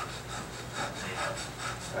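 A man breathing hard in short, rasping breaths several times a second as he strains through a slow chest-press rep.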